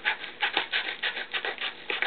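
Scissors cutting through a yellow kraft-paper padded mailer: a quick run of short scratchy cuts, several a second.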